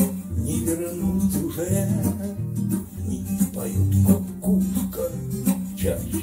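Music: an acoustic guitar accompanying a man singing a slow bard song.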